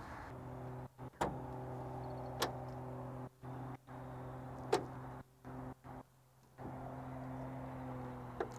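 A faint steady low hum with a few sharp clicks. The sound cuts out to silence several times for a moment.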